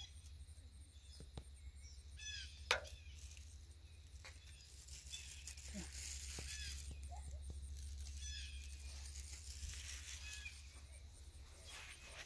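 Faint garden ambience: a few short chirping calls, a low steady rumble, and scattered light clicks, the sharpest a little under three seconds in.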